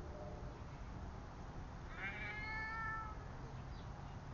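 A cat meowing once, a single call about a second long starting about two seconds in, with a faint steady low rumble behind it.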